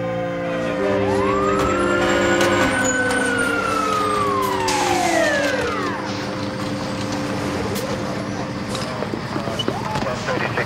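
Fire engine siren wailing in one long rise and fall of pitch, dying away about six seconds in, over held background notes.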